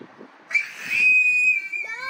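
A high, steady whistle starts about half a second in and is held for about a second and a half, sinking slightly in pitch at the end. Near the end, a child's voice rises in pitch.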